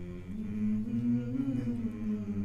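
Small a cappella vocal group holding low sustained chords without words. A higher voice comes in about a third of a second in and the chord swells.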